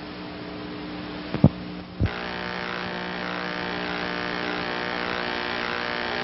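Steady electrical buzz and hiss on a VHS tape's sound track, with no program sound. It is broken by two short clicks about one and a half and two seconds in, after which the hiss becomes louder and stays steady.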